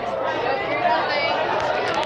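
Indistinct chatter: several voices talking over one another, with no single clear speaker.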